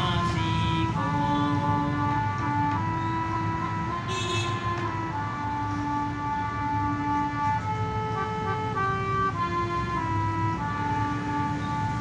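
Instrumental melody on a keyboard instrument: a run of held notes, one after another, stepping up and down over a low steady hum, with a brief hiss about four seconds in.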